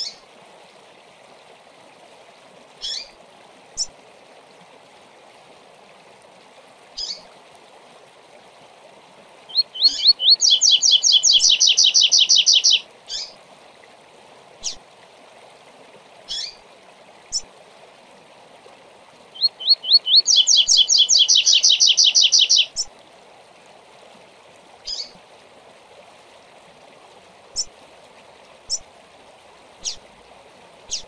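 Male double-collared seedeater (coleiro) singing its 'tui tui zel zel' song twice. Each song is a few quick introductory notes running into a loud, fast trill of about three seconds. Short single chips are scattered between the songs, over a steady rush of running water.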